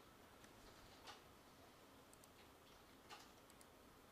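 Near silence with a few faint clicks of a computer mouse, the clearest about a second in and about three seconds in.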